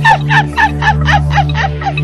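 A sampled run of short, falling, cackling cries, about five a second, over held low synth bass tones in a Chhattisgarhi DJ remix, just before the beat drops.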